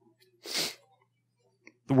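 A man's stifled sneeze into his hand: one short, hissing burst about half a second in.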